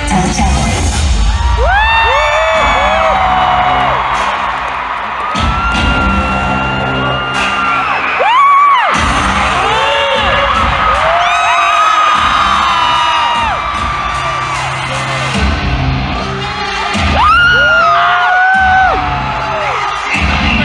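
Live K-pop song played loud through an arena sound system: a heavy bass beat under a woman's sung, sliding vocal lines, with the crowd cheering and screaming. The beat drops out briefly a few times.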